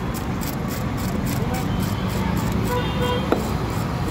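Busy market ambience with a steady traffic rumble and a vehicle horn tooting briefly about three seconds in. It is followed at once by a sharp knock, and faint knife scrapes on the fish run throughout.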